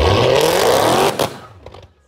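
Dodge Charger's engine revving hard with its rear tyres spinning in a burnout, the pitch climbing steadily for just over a second. Then the throttle is lifted and the sound drops away abruptly.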